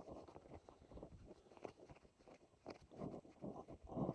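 Faint, irregular soft footfalls on grass, with rustling from a chest-mounted phone camera.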